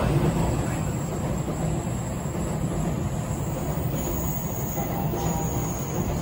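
Steady rumble of electric trains in motion beside a platform: a JR E531-series commuter train pulling out and an N700-series Shinkansen running past. A faint whine joins near the end.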